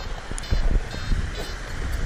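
Wind buffeting the microphone: an irregular low rumble that gets louder about half a second in.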